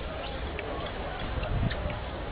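Background chatter of people at outdoor tables, with several short, sharp clicks scattered through it, over a steady low rumble.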